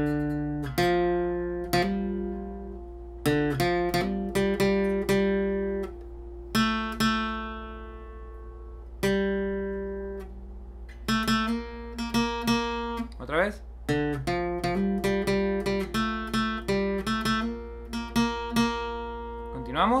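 Steel-string acoustic guitar playing a picked requinto lead melody in B-flat, capoed at the first fret. Some notes ring out and decay, others come in quick runs, with a few sliding notes.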